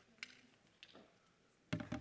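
Clip-on microphone being handled: a couple of light clicks, then a louder, short bump near the end.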